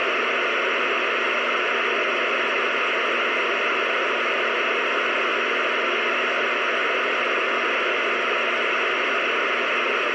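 Two-way radio receiver hissing with steady static, no signal coming through between transmissions. The hiss is even and unchanging throughout.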